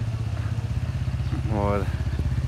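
Suzuki Alto's small three-cylinder engine idling steadily.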